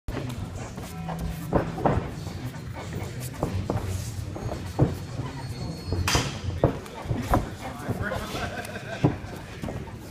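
Boxing gloves and shin-guarded kicks landing during sparring: irregular sharp thuds and slaps, the loudest about five and nine seconds in.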